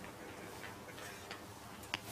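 Footsteps on a stone floor: a few faint, irregular taps, with a sharper one near the end.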